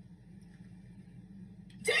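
Quiet room tone with a low steady hum. A short voice calls out near the end.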